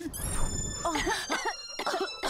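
Cartoon puff sound effect as a cloud of baking powder billows out of a mixing bowl: a sudden low rush with a falling run of high sparkly tones, about a second long.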